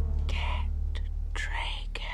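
Two short breathy whispers over a steady low rumble, with a couple of faint clicks in between.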